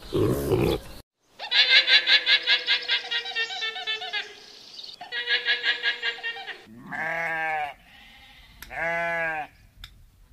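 A pig's grunting in the first second. Then alpacas give high, rapidly pulsing calls in two stretches, and near the end a sheep bleats twice, about a second each time.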